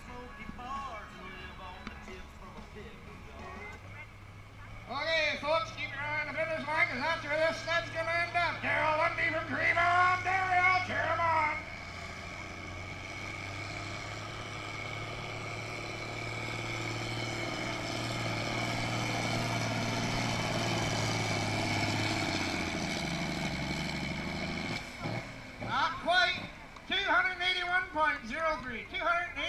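Tractor-pull tractor's diesel engine working at full throttle as it drags the weight-transfer sled down the track. It is a steady drone that grows louder for about ten seconds, then falls away as the pull ends.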